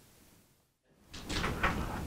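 Complete silence for about the first second, then faint room noise with a soft noise that builds up near the end, just before speech.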